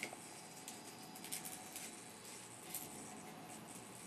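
Faint scratchy rustling of hands fastening a velcro strap around a small plastic digital pitch gauge, with a few light scrapes spread through.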